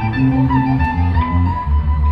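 Live band music recorded from the audience: a wavering lead melody over electric guitar and changing bass notes, with the notes shifting about every half second.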